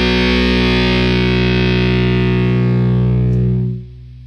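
Final chord of a punk rock song on distorted electric guitar, held and ringing out, then cut off sharply near the end, leaving a faint tail.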